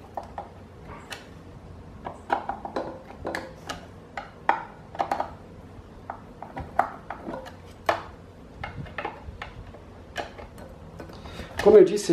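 Phillips screwdriver tightening the metal screws that hold a pedestal fan's column to its base: irregular clicks and light metallic scrapes, a few a second, as the tool turns and reseats in the screw heads.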